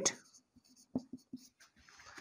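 Marker pen writing on a whiteboard: a few faint short strokes and ticks from about a second in.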